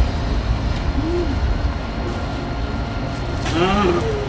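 A person's voice giving short hoot-like moans, a brief one about a second in and a stronger wavering cry near the end, over a steady low rumble.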